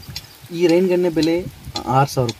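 A man's voice speaking briefly, over a steady hiss that fits water spraying from a rain gun sprinkler in the field.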